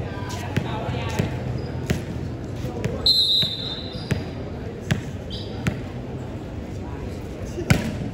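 A volleyball is bounced several times on the hard court, and a referee's whistle gives one short blast about three seconds in. Near the end comes the loudest sound, a sharp smack of the ball being struck for the serve. Crowd chatter runs underneath.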